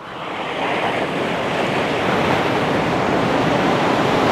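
Ocean surf washing onto a sandy beach: a steady rushing noise that swells over the first second and then holds.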